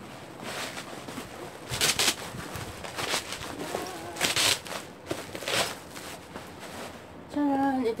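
Plastic bubble wrap rustling and crinkling in short bursts as a wrapped package is handled and unwrapped by hand.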